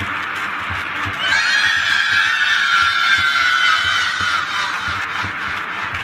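Layered, pitch-shifted cartoon nursery-rhyme audio: a long, high squealing cry starts about a second in, holds for about four seconds and slowly falls, over a steady low thump.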